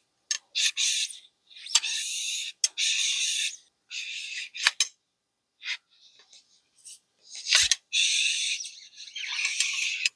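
Steel wool wrapped on a 12-gauge bore mop scrubbing back and forth through the ATI Bulldog shotgun's barrel on a cleaning rod, polishing the bore: a run of scratchy, hissing strokes of half a second to a second each. There is a sharp knock about three-quarters of the way through.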